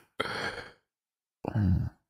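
A man's short breathy sigh, about half a second long, followed by a pause and then the start of speech near the end.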